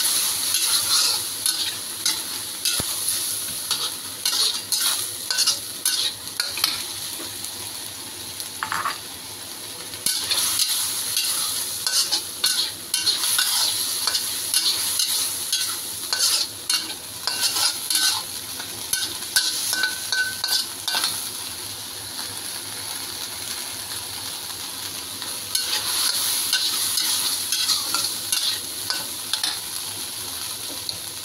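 Metal spatula scraping and stirring tofu and minced meat around a wok, in irregular strokes, over a steady sizzle of the frying sauce. The strokes thin out for a few seconds past the middle.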